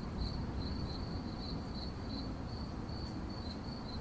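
Crickets chirping steadily, about three short high chirps a second, over a low, even background rumble.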